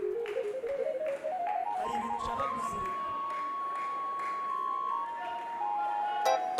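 Electronic tones climbing in quick, even steps for about two and a half seconds, holding one high note, then stepping down again near the end. Voices are faint underneath.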